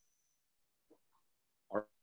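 Near silence on a video call, then a man starts to speak near the end.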